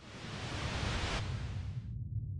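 Whoosh sound effect for an animated logo reveal: a swell of hiss over a low rumble that builds up in the first half second, thins after about a second and fades out near the end, leaving the low rumble.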